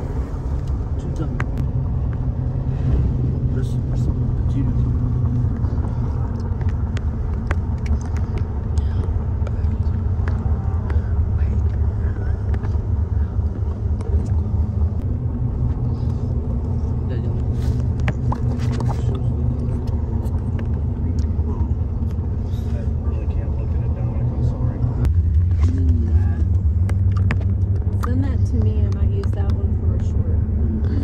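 Steady low road and engine noise inside a moving pickup truck's cabin, with faint scattered ticks. About 25 seconds in it turns louder and deeper.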